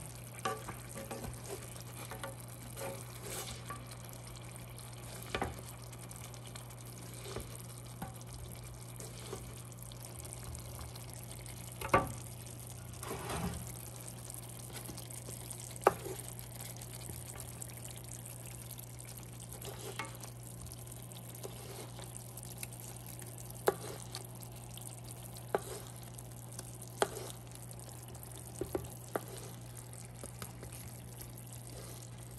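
Lamb chops simmering in a thick sauce in a skillet: a faint sizzle broken by scattered sharp pops and spits, over a steady low hum.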